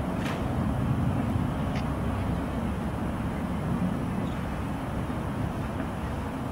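A sharp click of a rifle being handled during a rifle inspection comes just after the start, and a fainter click near two seconds. Both sit over a steady low outdoor rumble.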